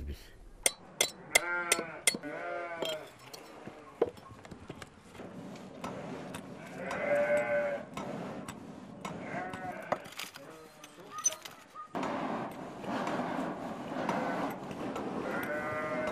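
Livestock bleating several times, each a short wavering call, with a few sharp clicks in the first two seconds and a steady background hiss that grows louder about twelve seconds in.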